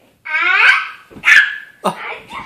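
A young child's loud, drawn-out yell followed by a short, high shriek during rough play, with a sharp knock near the end.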